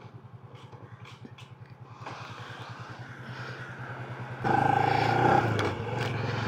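Yamaha LC135 motorcycle's single-cylinder four-stroke engine idling with even low pulses, then building as the bike pulls away. It gets much louder about four and a half seconds in.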